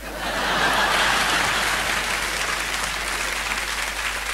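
Audience applause in reply to a comedian's joke, swelling within the first second and then slowly tailing off.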